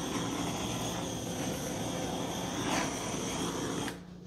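Handheld torch flame hissing steadily as it is passed over wet acrylic paint to pop air bubbles, then cut off suddenly near the end.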